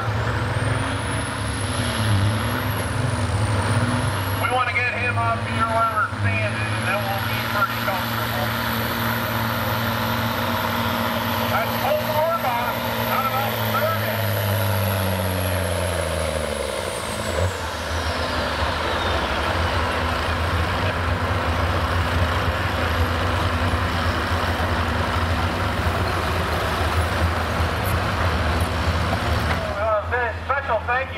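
Diesel semi truck pulling a weight-transfer sled at full throttle, its engine note holding steady with a high turbo whistle over it. About 17 seconds in, the throttle comes off: the engine note drops away and the whistle slides down as the turbo spools down.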